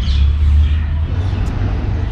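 Steady low rumble of outdoor city background noise, typical of distant traffic.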